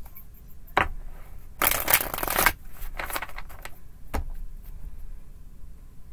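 A tarot deck shuffled by hand: a dense burst of rapid card flicks lasting about a second, a couple of seconds in, with a single sharp click shortly before it and another about two seconds after.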